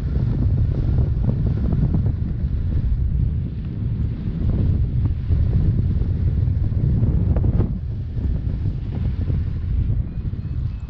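Airflow buffeting the microphone of a camera held out from a tandem paraglider in flight: a steady, loud, low rumble of wind noise.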